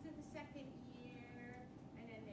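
A woman's voice speaking faintly and indistinctly, too low to make out words, with a faint steady hum beneath it.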